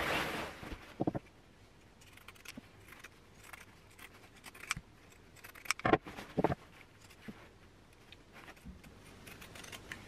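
Pinking shears snipping through petticoat seam allowances, with fabric being handled: faint scattered clicks and snips, a rustle at the start, and two sharper clicks about six seconds in.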